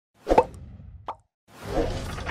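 Logo-animation sound effects: a sharp pop, a second smaller pop about a second in, then a sound swelling up near the end.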